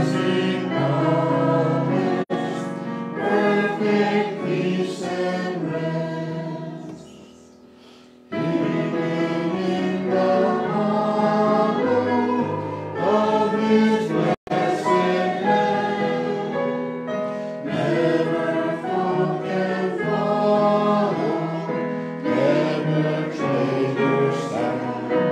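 A congregation singing a hymn together. The singing fades about six seconds in, leaves a short gap between lines, and comes back strongly just after eight seconds. The sound also cuts out for an instant twice.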